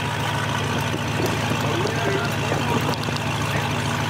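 A car engine idling steadily, with faint voices in the background.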